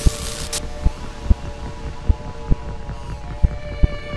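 Intro music: held string-like tones over slow, uneven low thumps. A short crackling burst of noise, an electric-zap sound effect, comes in the first half second.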